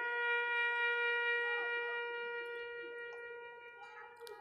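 A trumpet holding one long note, the closing note of a solemn call played for a minute of silence; it slowly fades and stops near the end.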